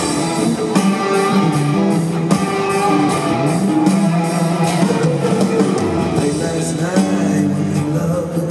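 Live rock band in an arena: electric guitar over a drum kit keeping a steady beat, with a male voice singing at times.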